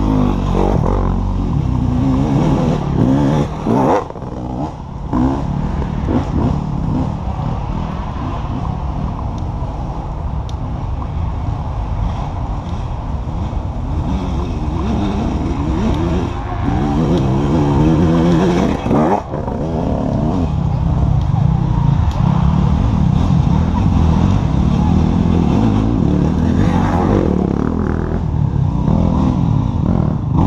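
Off-road racing motorcycles riding past one after another, their engines revving up and down, with brief dips about four seconds in and again near nineteen seconds.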